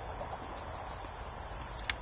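A steady, high-pitched chorus of insects singing.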